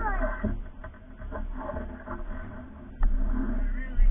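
Inline skate wheels rolling across the ramps and pavement, a low rumble that jumps suddenly louder about three seconds in, with a few short squeaky chirps near the start.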